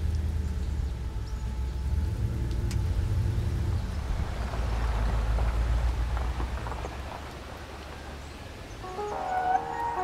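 A classic car's engine rumbling low and steady, with tyres crunching over gravel from about four seconds in; it fades out around seven seconds. Soft piano music comes in near the end.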